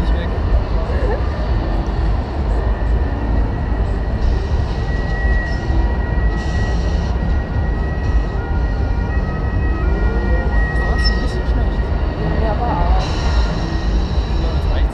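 Wind buffeting the camera microphone high on a stationary fairground ride: a steady, loud low rumble, with faint voices underneath.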